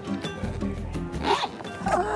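Zipper on an expandable hard-shell carry-on suitcase being tugged in two short rasps, one about a second in and one near the end: a jammed zipper being worked open. Background music plays under it.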